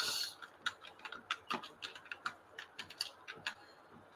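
Computer keyboard being typed on: a brief hiss at the start, then an uneven run of light key clicks, about four a second, stopping shortly before the end.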